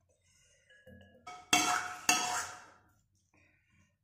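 A spatula scraping and knocking against a wok as stir-fried lotus root slices are scraped out into a bowl: a few light clicks, then two sharp ringing knocks of metal on the wok, about half a second apart.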